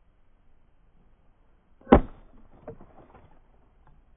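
A single hard chop into a dry, rotten log about two seconds in, followed by a second or so of smaller cracks and knocks as the wood splits and pieces fall away.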